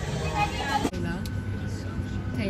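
Brief voices, then after a sudden cut about a second in, the steady drone of an airliner cabin: a low hum with a thin, steady high tone over it.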